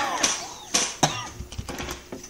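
A man coughs at the start, then a few sharp clicks of keys on a computer keyboard.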